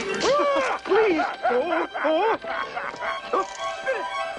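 A cartoon villain's evil laugh: a run of short "ha" syllables, each rising and falling in pitch, about three a second, over background music.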